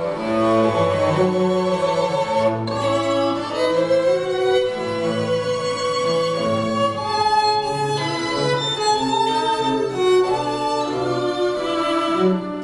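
String quartet of two violins, viola and cello playing live, with sustained bowed notes in several parts over a stepping cello line.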